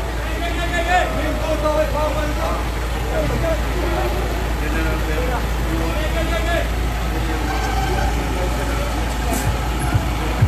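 Indistinct voices talking over the steady low rumble of idling vehicle engines.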